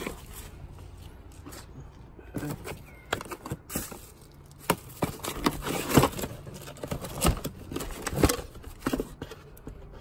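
Rummaging through a plastic bin of junk: irregular knocks, scrapes and rustles as cardboard, papers, cloth and plastic items are shifted by hand, busiest in the second half.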